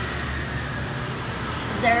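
Steady mechanical hum and whir of a self-service laundromat's coin-operated machines, with no sudden events.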